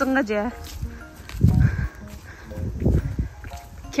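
A few spoken words at the start, then two low, muffled rumbles about a second and a half and three seconds in.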